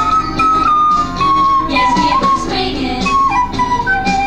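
A small handheld wind instrument played to a melody of clear, held notes that step up and down, over a backing music track.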